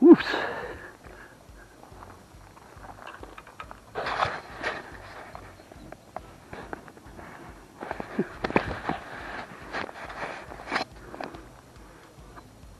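Crunching footsteps and handling noises on a pebble shore: a sharp knock right at the start, then bursts of crunching about four seconds in and again near the end.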